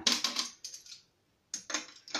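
Stainless steel cap and clamp being fitted back onto a tee on a still pot's lid: a quick run of metallic clicks and clinks, a short pause, then more clicks about a second and a half in.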